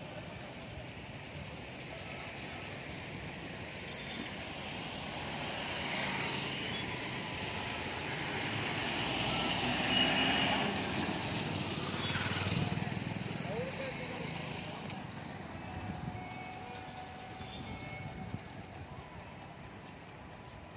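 Light street traffic in which a bus engine running close by grows louder toward the middle and then fades, with a brief high beep about halfway through.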